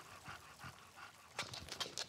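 Bulldog panting quickly and faintly while walking on a leash, with a few sharp clicks near the end.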